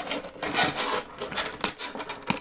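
Clear plastic blister packaging being handled and flexed in the hands, giving an irregular rustling crackle with many small sharp clicks.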